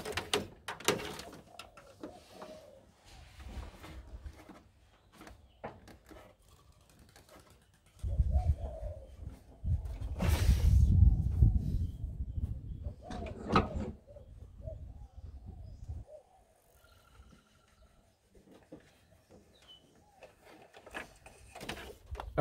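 Clicks, knocks and rustling of electrical cable being handled and fed through a car's engine bay, with a low rumble through the middle several seconds.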